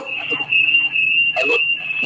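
A steady high-pitched whistle-like tone on the telephone line as a listener's call is connected to the studio, cutting off just as the caller begins to speak.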